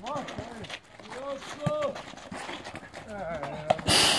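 Players' voices calling out during handball play, mixed with footsteps and knocks of the ball on the court. A sharp, loud hit comes near the end.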